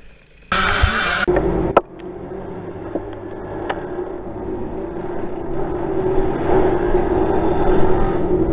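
Many dirt bike engines running together as a pack of riders climbs a dirt track, heard from a rider's helmet camera, slowly getting louder, with a sharp knock about two seconds in. It is preceded, half a second in, by a brief loud burst of noise lasting under a second.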